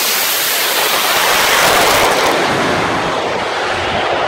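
Hydrogen-peroxide rocket motor of a drag-racing rocket bike firing at launch: a loud, steady rushing roar that starts suddenly, its highest hiss thinning a little past halfway.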